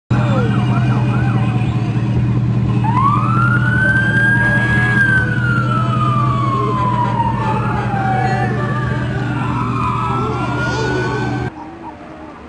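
Emergency-vehicle sirens wailing, several overlapping slow rising and falling sweeps with a few quick yelps early on, over a steady low drone of vehicle engines. The sound cuts off suddenly near the end.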